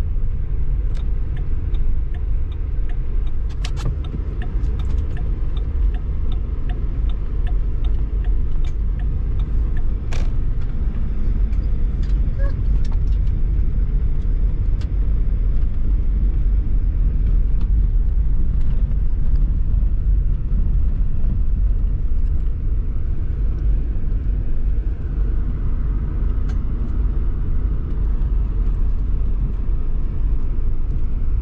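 Steady low road and engine rumble heard inside a vehicle's cab as it drives on a snow-packed road. A run of light, evenly spaced ticks comes a few seconds in, and a sharper click about ten seconds in.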